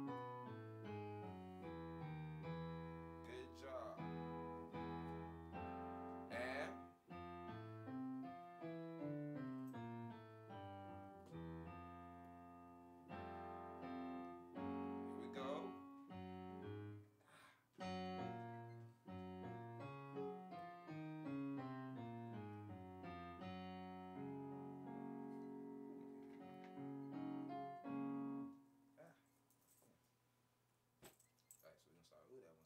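Yamaha Motif XS8 synthesizer keyboard played with a piano sound: a run of chords under a moving melody. The playing stops near the end.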